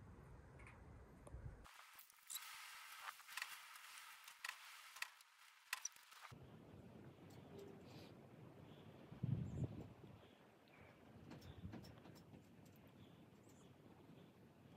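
Near silence: faint rustling and scattered small clicks as a newborn calf is held in a lap for tube feeding, with one soft low thump about nine seconds in.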